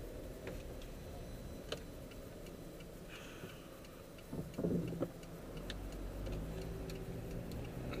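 Car turn-signal indicator ticking steadily inside the cabin over the low hum of the engine and road. The engine grows louder in the second half as the car pulls out and accelerates onto the street, and there is a brief louder knock about halfway through.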